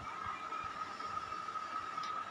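Quiet room tone: a faint background hiss with a thin, steady high-pitched tone.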